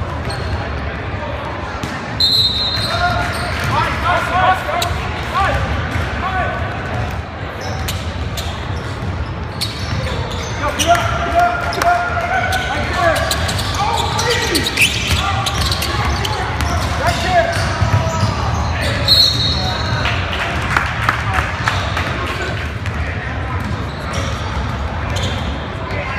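Gym sounds of a basketball game: a ball bouncing on the hardwood court, with players and spectators shouting in an echoing gym. Two brief high squeals, about two seconds in and again near nineteen seconds.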